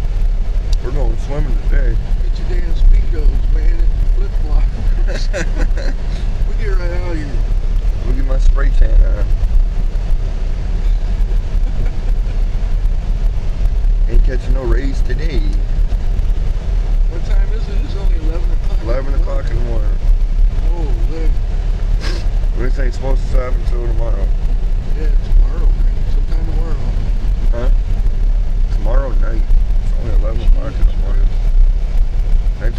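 Steady low rumble of a car's engine and tyres heard inside the cabin while driving on a snow-covered road, with indistinct voices now and then.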